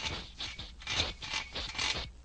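Cartoon sound effect of a hand tool rasping back and forth against the plane's engine: a quick run of scraping strokes, about three or four a second.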